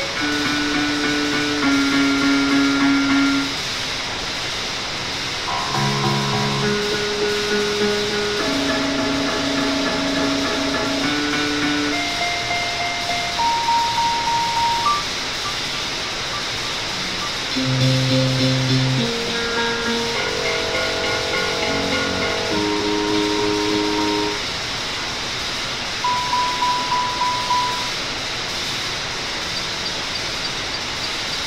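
Experimental electronic music: held synthesizer tones, several at once, changing pitch every second or two over a steady hiss, with a stretch of quick pulsing near the end.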